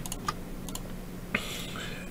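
A few scattered clicks of a computer keyboard and mouse, with a brief hiss near the end over a faint steady hum.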